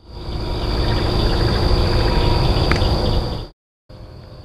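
Night-time outdoor sound, boosted loud: steady cricket chirring over heavy hiss and rumble, with a faint unidentified noise inside it. It cuts off abruptly to silence near the end.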